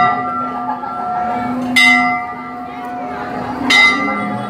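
Large metal temple bell struck at a steady pace, about every two seconds, each stroke ringing on with bright overtones until the next.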